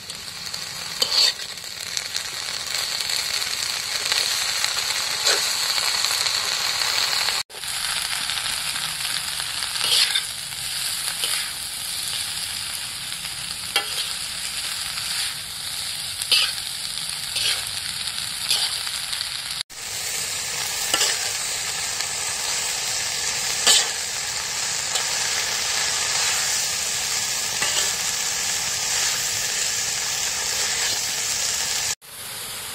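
Crickets sizzling as they are stir-fried in an aluminium wok, with a metal spatula scraping and clicking against the pan as they are turned. The steady sizzle briefly drops out twice.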